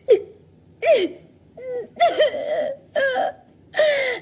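A woman crying in a string of short, high-pitched whimpering wails, each bending up and down in pitch, with one longer drawn-out cry in the middle.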